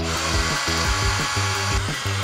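Cordless drill running steadily at the edge of a roof vent on a van's roof, easing off near the end. Background music plays underneath.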